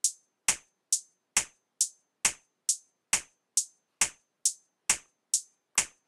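Drum-machine closed hi-hat, 808-style, ticking in a steady pattern of short, bright hits, a little over two a second.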